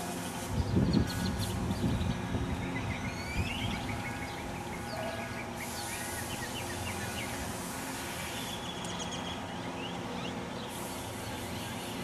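A long wooden board being handled: a few sharp wooden knocks about a second in. Birds chirp now and then over a steady low outdoor hum.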